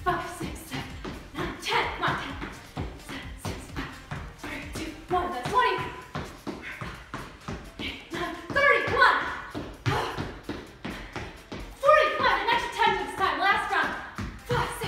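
Quick, repeated thumps of sneakers landing on a hardwood floor as a person hops from foot to foot in Heisman jumps, over background music with singing.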